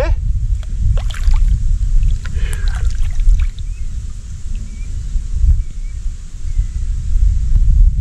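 Shallow water sloshing and splashing around a redtail catfish being handled and released, with a low rumble throughout and a few sharp splashes in the first few seconds. Faint short chirps about once a second near the end.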